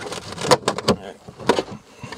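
Hard plastic trim cover in a car's boot being handled and lifted off, giving a run of sharp plastic clicks and knocks: several close together in the first second and one more about a second and a half in.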